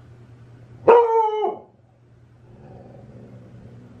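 A dog gives one long bark about a second in, a single drawn-out call that falls slightly in pitch.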